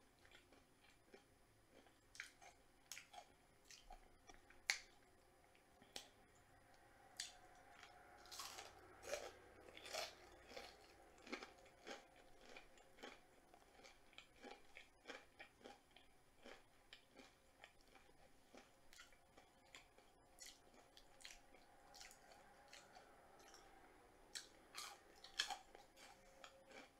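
Faint, close-miked mouth sounds of someone chewing crispy fried food, with irregular sharp crunches and wet clicks. The loudest crunch comes about five seconds in, with another near the end.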